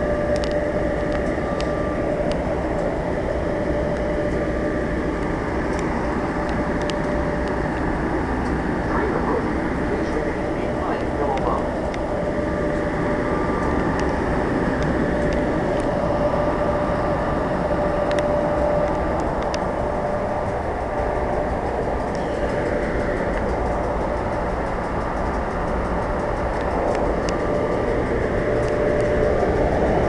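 AEM-7 electric locomotive standing at the platform, its cooling blowers and transformer running with a steady hum and a constant tone over a low rumble.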